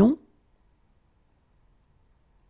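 A voice finishing the French question "Où se déroule la réunion ?", cut off abruptly a fraction of a second in, then near silence.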